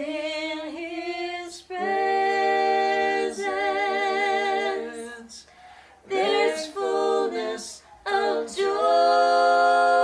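Two women and a man singing together unaccompanied, in phrases of long held notes with short breaks between them.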